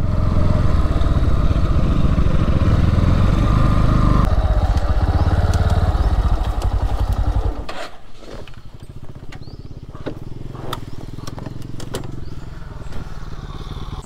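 Bajaj Pulsar motorcycle engine running at low speed on a dirt track, then switched off about seven and a half seconds in. After that comes scattered crunching of dry leaves underfoot.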